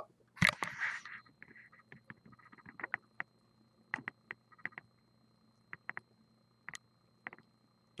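Handling noise: a short rustle as the camera is grabbed and tilted down over the beer glass, then faint, scattered clicks and taps with quiet gaps between them.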